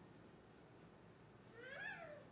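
Near silence with faint room tone, then about a second and a half in a brief, faint vocal sound that rises and then falls in pitch.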